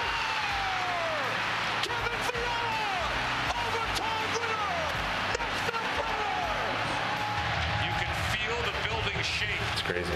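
Hockey arena crowd cheering and yelling, a dense continuous roar with several long falling yells and scattered sharp knocks.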